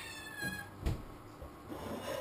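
A pet's high-pitched cry, sliding down in pitch and fading out within the first second, followed by a single dull knock about a second in.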